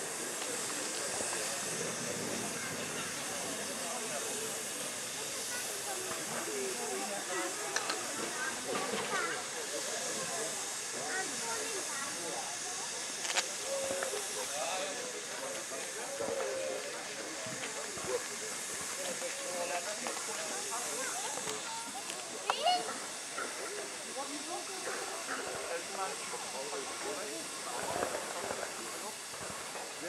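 Small industrial tank steam locomotive standing and hissing steam steadily, with a few short knocks and murmured voices over it.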